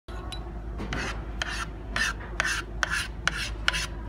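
A metal spoon scraping in a series of short strokes, about two a second, each opening with a light click, as raspberry sauce is scooped from a ceramic cup and swept out in streaks across a hard tabletop.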